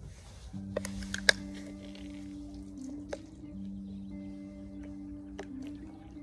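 Pabst Blue Ribbon beer can cracked open, a few sharp clicks about a second in followed by a brief hiss. Behind it, background music with two steady low held notes.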